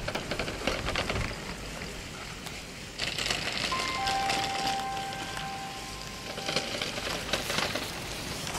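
Ski edges scraping and chattering over hard, icy snow as a giant slalom racer carves turns through the gates, a rough, rattling hiss that grows louder about three seconds in. Two faint steady tones sound together through the middle.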